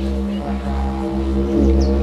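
Background music: a steady low drone with long held tones above it.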